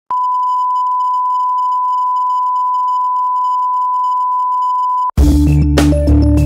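Television test-card reference tone: one steady, pure beep held for about five seconds that cuts off suddenly. Electronic intro music with a beat follows at once for the last second.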